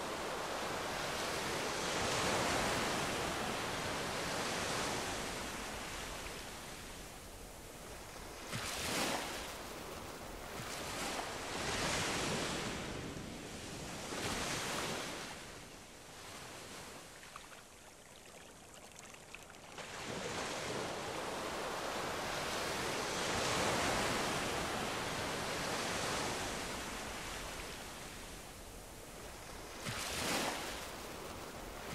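Ocean surf washing onto a sandy beach, swelling and fading in long surges, with a few shorter breaks in the middle and a quieter lull a little past halfway.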